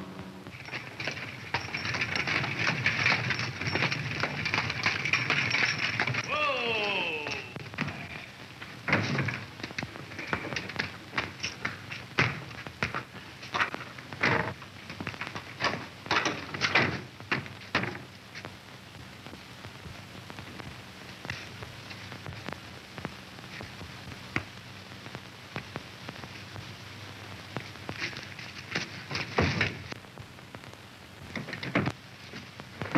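A horse whinnying, the call falling in pitch, then a run of sharp knocks and thuds that thin out to occasional clicks.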